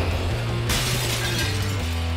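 News programme's title-sting music with a heavy bass line, and a sudden bright crash sound effect, like breaking glass, coming in just under a second in.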